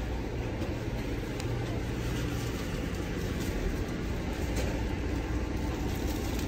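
Steady low rumble of a moving Amtrak passenger train, heard from inside the coach.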